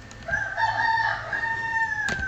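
One long animal call with a steady pitch, beginning about a third of a second in and carrying on without a break.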